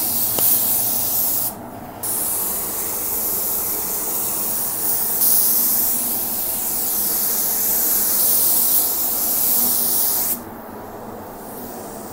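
Gravity-feed automotive paint spray gun hissing as compressed air atomises the paint: a burst of about a second and a half, a brief pause, then one long steady pass of about eight seconds that cuts off near the end. It is laying a lighter, semi-wet second coat of paint.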